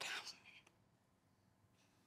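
The breathy, whispered tail of a woman's distressed "Oh, God" fading out within the first half second, then near silence: room tone.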